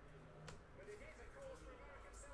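Near silence: a faint voice in the background and a single light click about half a second in, from paper trading cards being flipped through by hand.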